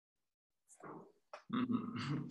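A silent pause, then a man's breath, a small mouth click, and a drawn-out hesitant vocal sound starting about one and a half seconds in, as he begins to answer.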